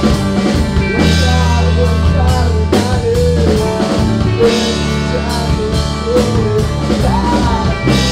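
A rock band playing in rehearsal, recorded through the air on a mobile phone: drum kit with steady cymbal strokes about twice a second, a heavy bass line and a wavering melody line above.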